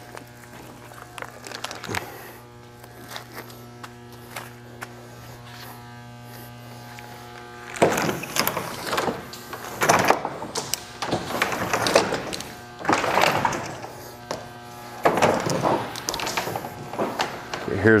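A steady hum for the first half. Then, from about eight seconds in, a run of rough scraping and rubbing noises, each about a second long, as a CIPP patch packer is shoved on a push rod into a 4-inch PVC pipe.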